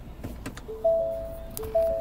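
A 2015 Ford Edge's electronic dashboard chime sounds twice, each time a quick run of three overlapping tones, as the SUV goes into reverse and the backup camera comes on. A couple of light clicks come just before.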